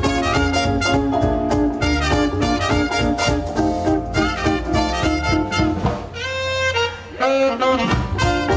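A live swing band plays an instrumental passage: trumpet and horns over walking double bass and drums. About six seconds in the horns hold a long chord, then the music dips briefly before the full band comes back in.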